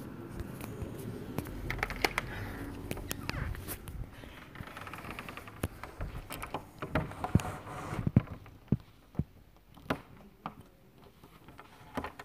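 Scattered clicks and knocks of someone moving about, getting quieter after about eight seconds.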